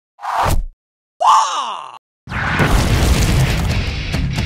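Intro title sound effects: two short sweeps falling in pitch, the second with a groan-like tone, then from about two seconds in a dense, rumbling noise that carries on.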